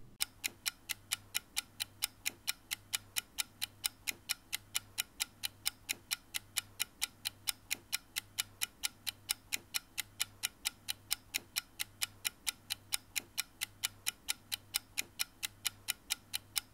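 Clock ticking at a steady fast pace, about four ticks a second, over a faint low hum.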